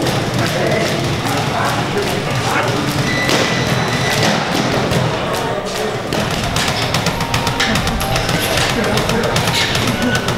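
Boxing gym ambience: music and background voices, with frequent thuds and taps from training throughout.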